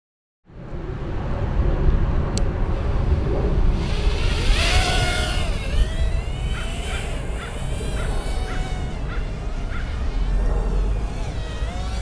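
Brushless motors and props of a 65 mm two-cell toothpick micro quadcopter whining in flight, the pitch rising and falling with throttle, with a big swell about four seconds in. A low rumble of wind on the microphone runs underneath.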